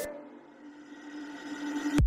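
The tail of a background music track: the beat stops and one held low note fades away quietly.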